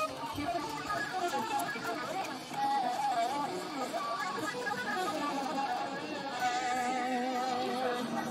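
Electric guitar played lead: melodic single-note runs, then a long note held with vibrato near the end.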